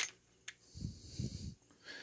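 A sharp click from handling the plastic-handled PicQuic multi-bit screwdriver and its metal shaft, with a fainter tick about half a second later. Soft breathing follows.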